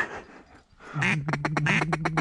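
Mallard duck call blown in a fast chatter of short quacks, about eight a second, starting about a second in, after a single short note at the very start.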